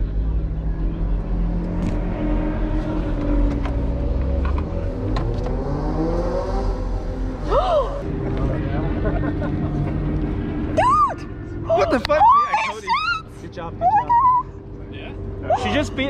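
Porsche 718 Cayman's engine running at low speed, heard from inside the cabin: a steady low drone for the first four or five seconds, then its pitch slides up and down. Voices are heard over the last few seconds.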